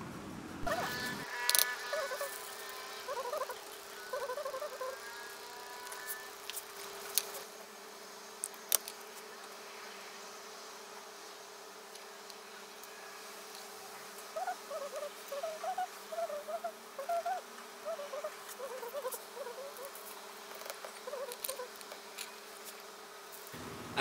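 A faint steady whine with scattered light clicks and short warbling chirps.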